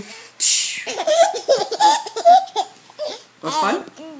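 A baby laughing, starting with a breathy squeal and going on in high, wavering bursts of giggling.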